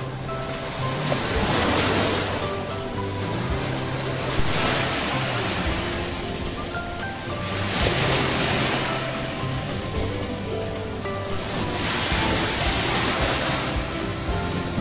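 Sea waves washing onto a beach, the surf swelling and fading every three to four seconds, with music playing over it.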